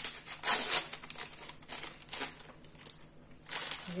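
A small paper packet of Savon de Marseille soap flakes being handled and opened by rubber-gloved hands: irregular crinkling and rustling of the paper, loudest about half a second in.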